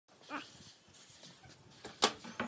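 A brief pitched cry about a third of a second in, then a light knock near the end as a large ceramic tile is set down on a wooden tabletop.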